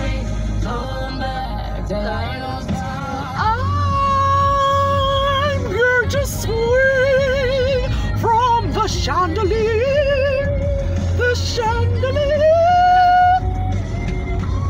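A song playing on the car radio inside the cabin, a singer holding long, wavering notes over the low rumble of the moving car.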